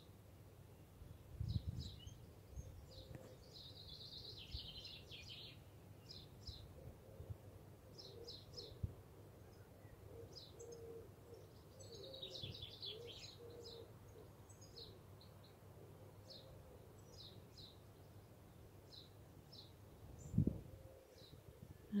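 Faint birdsong: short high chirps coming and going, some in quick clusters. A soft low thump sounds about a second and a half in and another near the end.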